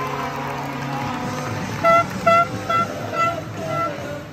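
A handheld plastic fan horn sounds five short toots in quick succession, starting about two seconds in, over crowd noise and arena music.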